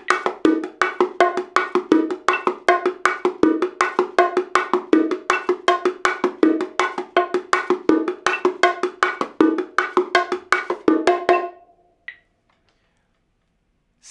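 Bongos played with bare hands in the martillo pattern at double time: a steady, even run of quick hand strokes mixing thumb and finger strokes, muted edge tones and a recurring ringing open tone. The playing stops cleanly near the end.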